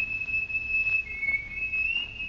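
A high whistled melody line in a song's intro: long held notes with small slides between them, standing nearly alone while the backing band drops away.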